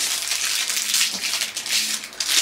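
Plastic wrapper crinkling as it is torn open and pulled off a pair of disposable chopsticks.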